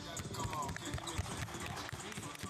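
Basketballs dribbled on a hardwood court, two at a time, making rapid bounces under background music.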